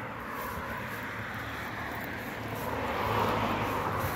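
Street traffic: a steady wash of road and vehicle noise that swells a little near the end.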